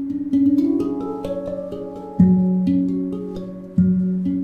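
Steel handpan played with the fingers: a quick run of ringing higher notes in the first second, then a deep low note struck twice, each note sustaining and overlapping the next.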